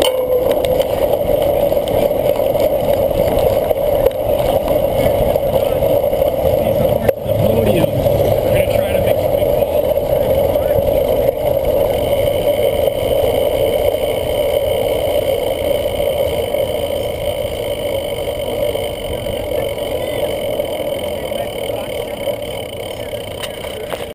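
Wind and riding noise picked up by a handlebar-mounted camera on a cyclocross bike rolling over grass: a steady rushing with a hum, a single sharp knock about seven seconds in, easing off a little near the end.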